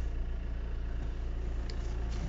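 Steady low hum of a Volvo XC60's 2.0-litre D4 four-cylinder diesel engine idling.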